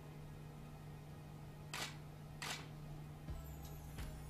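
Two camera shutter clicks, under a second apart, about halfway through, over a steady low hum.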